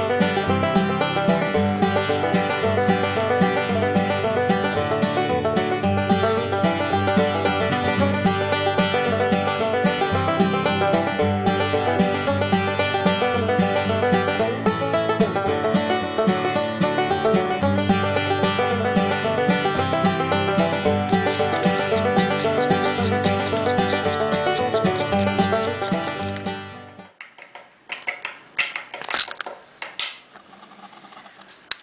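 Instrumental background music with a quick, even rhythm, stopping abruptly near the end. After it, a few faint clicks and handling sounds.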